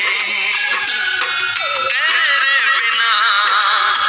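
A Hindi song playing: a wavering, sliding melody line over a full instrumental backing.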